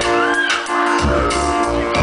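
Live amplified electronic keyboard music: sustained chords over a low beat, with a brief high glide that rises and falls in the first second.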